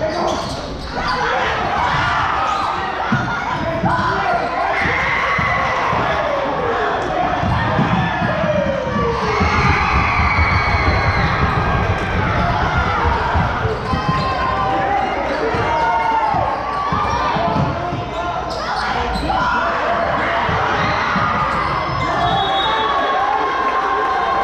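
Basketball game sounds in a gym: a basketball being dribbled on the hardwood court, mixed with short squeaks and voices from players and spectators.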